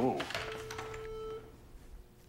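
A steady electronic beep: one held tone lasting about a second, with fainter higher tones joining near its end before it cuts off.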